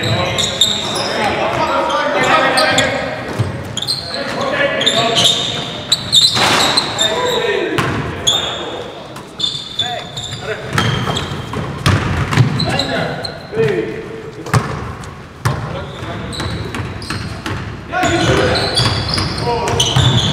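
Basketball being dribbled and bouncing on a hardwood gym court, with repeated sharp knocks, mixed with players' voices calling out and echoing in a large gymnasium.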